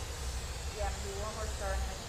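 Steady low roar and hiss of gas burners in a glassblowing hot shop, including a lit hand torch held to the glass.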